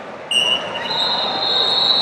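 Rubber-soled wrestling shoes squeaking on the mat: a sharp high squeak about a third of a second in, then a longer high squeal from about a second in, over the murmur of a large hall.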